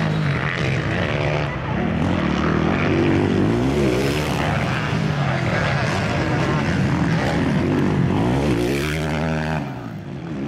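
Several 450-class motocross bikes racing, their engines revving up and down in overlapping waves as riders work the throttle through the track. The sound dips briefly near the end.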